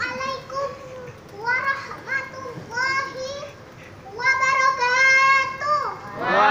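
A young girl's high voice chanting in melodic phrases, with long held notes from about four seconds in to near the end.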